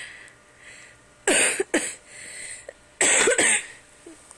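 A sleeping man making loud, rough noises with his breath and throat in two bursts. The first, about a second in, comes in two quick parts; the second, a little longer, comes near three seconds.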